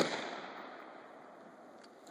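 The last of a quick string of AR-15 rifle shots, cut off at the very start, then its echo rolling away and fading over about a second and a half. A faint click near the end.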